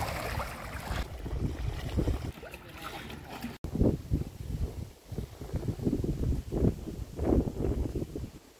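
Wind on a phone microphone by the sea. A steady hiss of wind and water at first, then, after a sudden cut a little over three and a half seconds in, low gusty buffeting.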